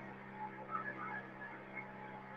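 Faint, steady low hum of a small motor boat's engine running under way, with a few faint scattered higher sounds over it.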